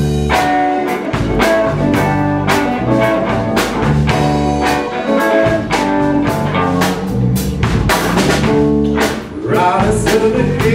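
Blues band playing live: electric guitar, bass and a drum kit keeping a steady beat, with saxophone. The music dips briefly just before the end, then carries on.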